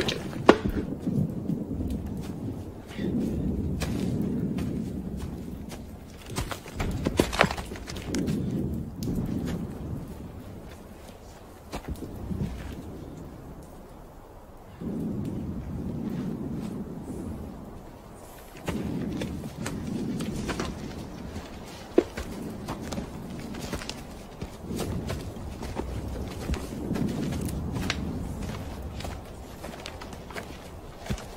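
Footsteps of several soldiers walking through forest undergrowth, with scattered knocks and thuds of gear. A low rumble comes and goes every few seconds.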